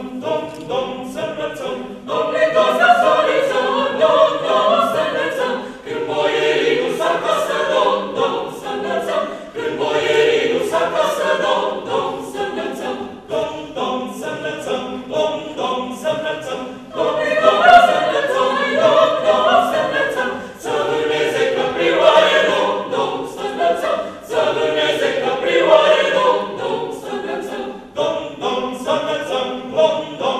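Mixed choir of professional opera singers, men and women together, singing a Romanian Christmas carol a cappella under a conductor, in phrases with short breaks between them.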